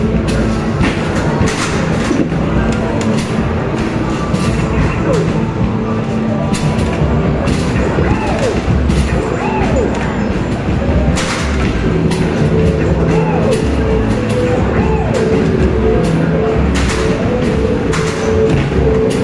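Arcade basketball machine's electronic music and game tones playing loudly, with frequent thuds of basketballs hitting the backboard, rim and return ramp as shots are thrown in quick succession.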